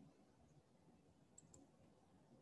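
Near silence: room tone, with two faint clicks close together about a second and a half in.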